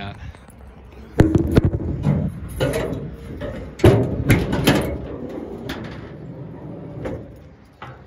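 Metal clunks and rattles from the hood of a 1949 Chevrolet 3100 pickup being released and pushed up with some effort. The loudest clunks come about a second in and near four seconds.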